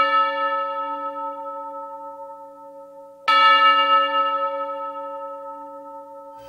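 A bell-like chime in a piece of music, struck twice about three seconds apart, each note ringing on and slowly fading.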